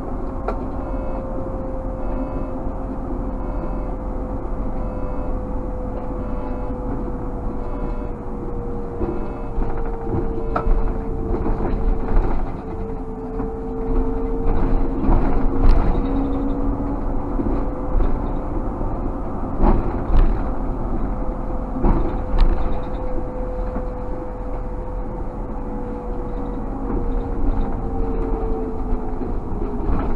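Škoda 30Tr SOR trolleybus under way, heard from the cab: the electric traction drive gives a steady whine that drifts slowly in pitch with speed, over road rumble. A few short knocks come now and then.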